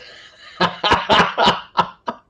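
A man laughing: a breathy start, then a run of about five quick laughs that trails off.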